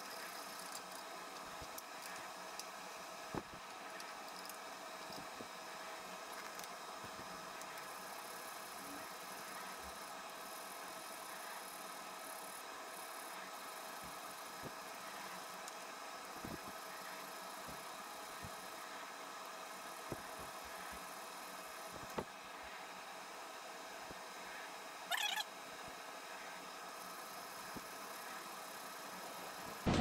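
Quiet, steady workshop hum with faint rubbing of wet sandpaper on a steel knife blade clamped in a vise. A few light clicks and knocks come through, with a brief louder clatter a little before the end.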